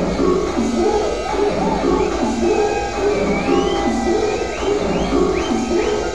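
Electronic dance music: a looping synth bass riff repeating over a steady deep low end, with a run of short rising high synth chirps in the second half.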